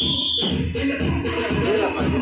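Background music with a steady beat, and a short high tone just at the start.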